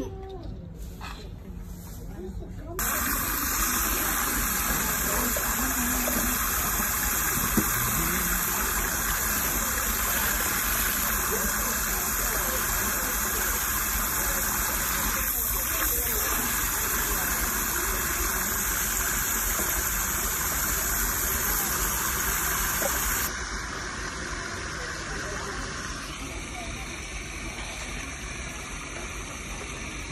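Pedicure spa tub faucet spraying water over feet into the foot bath, a steady loud rushing hiss that starts suddenly about three seconds in and cuts off about twenty seconds later.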